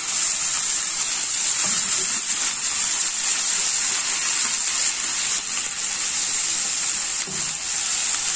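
Minced garlic sizzling in hot oil in a nonstick frying pan: a steady, hissing fry, with a metal slotted spoon stirring it through the oil.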